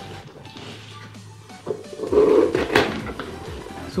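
A cardboard shipping box being handled and its cut flaps pulled open: rubbing, scraping and a series of small knocks that grow louder about halfway through.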